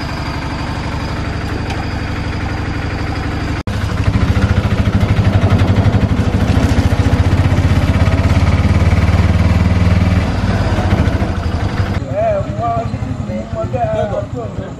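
Auto-rickshaw (tuk-tuk) engine running under way, heard from inside the open cab. It grows louder with a quick throbbing beat from about four seconds in and eases off after about ten seconds. Near the end it gives way to voices on a street.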